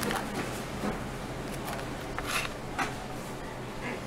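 Pizza wheel cutter rolling through a pepperoni pizza's crust, making several short scratchy crunches over a steady low background hum.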